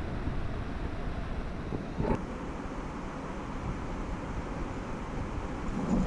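Steady wind buffeting the microphone over the rush of river water running through rocky riffles, with one light knock about two seconds in.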